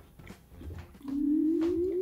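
A man humming a closed-mouth 'mmm' that rises steadily in pitch for about a second, starting halfway in, as he chews and tastes a bite of food.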